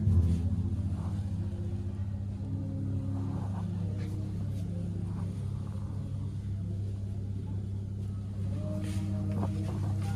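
A steady low hum with faint, short tones above it.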